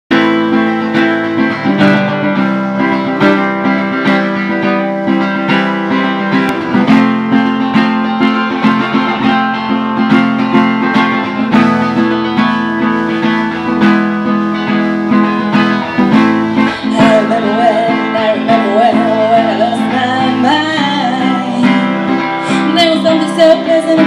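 Live acoustic guitar playing a steady strummed and picked accompaniment in a small band. A wavering melody line joins about 17 seconds in.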